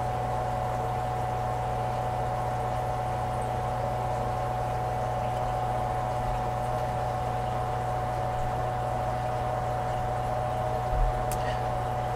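Water running steadily from an open tap, drawing down a jet pump's pressure tank while the pump is switched off, over a steady low hum and a thin high tone. A faint click near the end.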